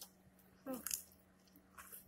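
Faint chewing of a mouthful of crab cake, with a short hummed "hmm" just before a second in and a couple of small mouth noises near the end.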